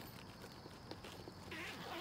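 Faint handling sounds from inside a child's backpack: a few light clicks and knocks with soft rustling, a little louder near the end.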